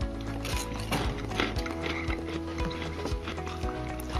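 Crunching and chewing of a Ferrero Rocher's crisp wafer shell and chopped hazelnut coating, a run of irregular small crunches, over background music with held notes.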